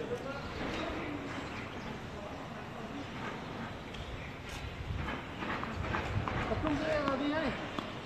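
Voices talking between points on an outdoor tennis court, the talk getting clearer in the second half, with a few scattered sharp knocks.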